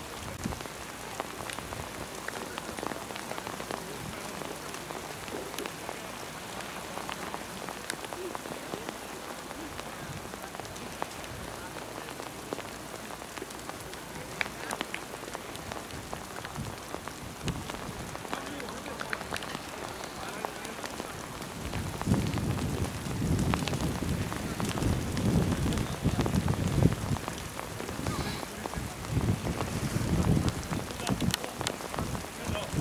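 Outdoor noise at a football pitch picked up by the camera microphone: a steady crackling hiss with scattered small clicks. From about 22 seconds in, a louder low rumble comes and goes to the end.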